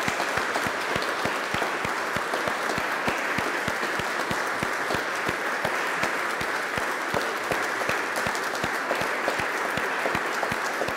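Congregation applauding, a steady mass of many hands clapping without a break.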